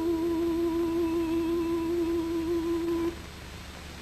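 A man humming one long held note with a slight vibrato, which cuts off about three seconds in, over the hiss of an old film soundtrack.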